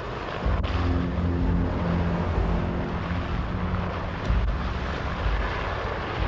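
Helicopter in flight: a steady, loud rush of rotor and engine noise.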